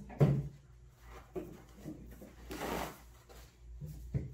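Paper towels being handled, with a short rustle about two and a half seconds in, after a few light knocks.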